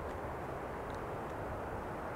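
Steady outdoor background rumble and hiss, even in level, with no distinct events.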